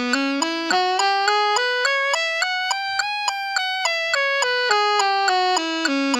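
Alto saxophone playing a Bb minor blues scale in short even notes, climbing step by step to a high peak about halfway through and then coming back down, over a steady metronome click.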